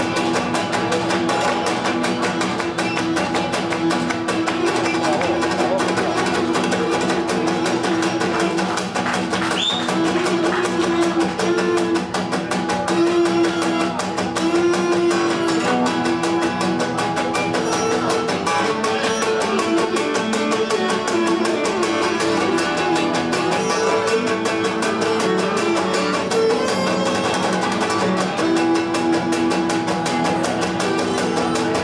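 Cretan lyra bowed in an instrumental melody: held notes with slides between them.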